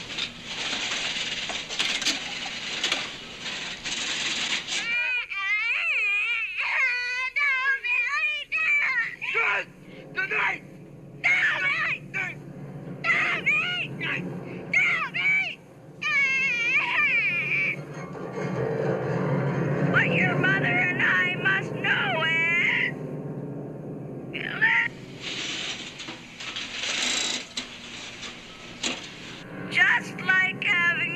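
An anonymous caller's deranged voice over a telephone line, switching between several voices: shrill, wavering squeals and crying like a child, bursts of harsh breathy hissing, and a lower voice in the middle.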